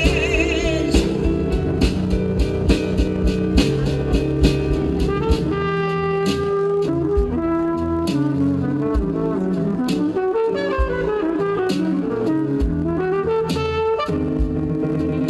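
Live jazz played by a trumpet, drum kit and electric keyboard, with the trumpet carrying the melodic line over steady drum strokes and keyboard chords.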